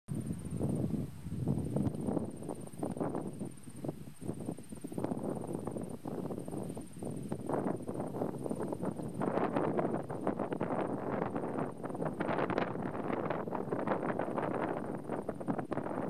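Outdoor ambience of gusting, wind-like noise that swells and fades irregularly.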